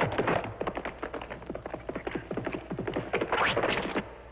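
Rapid, irregular clattering of clicks and taps, about ten a second, in a percussive film soundtrack. It grows sharper near the end and cuts off suddenly.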